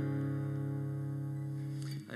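A single chord on an amplified acoustic guitar left to ring out, slowly fading with no new strums.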